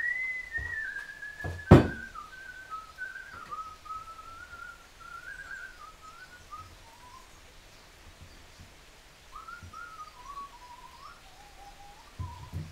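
A person whistling a slow, wandering tune that starts high and drifts lower, breaking off for a couple of seconds past the middle and then resuming. A single sharp knock, the loudest sound, comes just under two seconds in, with a few lighter knocks near it.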